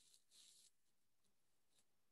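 Near silence, with a faint brief hiss about half a second in.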